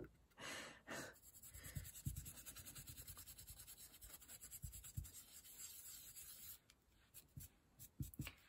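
Faint scratchy strokes of a dry paintbrush brushed and dabbed over a stencil, in a quick even run from about two seconds in until near the end.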